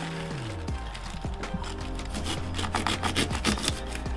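Lower leaves being pulled and cut off a pineapple crown: dry, stiff leaves tearing and rubbing against a knife, in a quick run of short strokes from about a second in, over background music.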